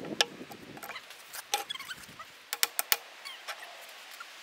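Sharp clinks and knocks of a steel pipe wrench and hydraulic cylinder parts being handled as the piston nut is worked loose, a few scattered and several in quick succession in the second half.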